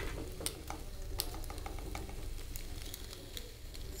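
A white plastic spoon stirring cooked elbow macaroni in a pan, with scattered light clicks of the spoon against the pan and a faint sizzle as ghee melts in.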